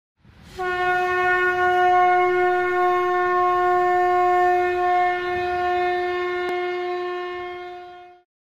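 One long, steady note blown on a horn-like wind instrument, starting about half a second in and fading near the end, with a faint click a little over six seconds in.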